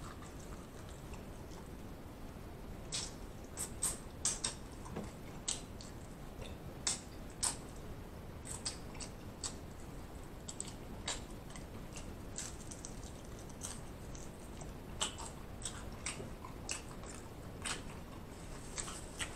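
Close-miked chewing of breaded fried chicken wings: irregular crisp crackles and mouth clicks, thickest a few seconds in and again near the end.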